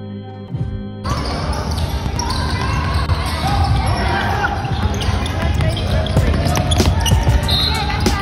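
Background guitar music for about the first second, then the sound of a youth basketball game in a gym: basketballs bouncing on the hardwood court and the voices of players and spectators echoing in the hall.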